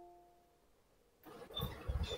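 The fading tail of a two-note Google Meet join-request chime, then near silence. About a second in, rumbling background noise with a few low thumps comes in over the call audio.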